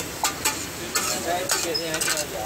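Two metal spatulas clacking and scraping on a large flat tawa griddle as tiki mixture is chopped and fried, in a fast, uneven run of strikes. A steady sizzle runs underneath.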